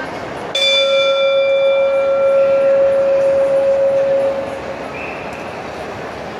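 Boxing ring bell struck once about half a second in, ringing out and fading over about four seconds, signalling the start of a round.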